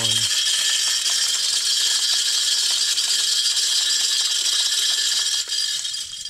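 Tripod deer feeder's battery-powered spinner motor running a test cycle, a steady whine with a dense rattle of feed being flung off the spin plate and scattering. It starts suddenly and cuts off just before the end.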